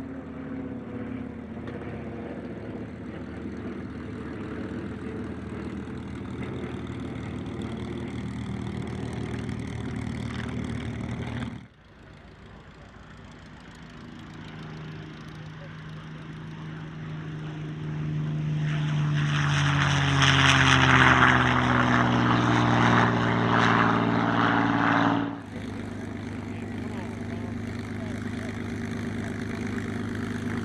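P-51 Mustang's Merlin V-12 engine idling steadily as it taxis. After a cut, a Mustang's engine grows louder as the plane lifts off and passes at high power, loudest a little past halfway, its note falling in pitch as it goes by. After a second cut, another taxiing Mustang's engine is heard idling steadily.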